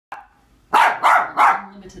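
A small young dog barking three times in quick succession.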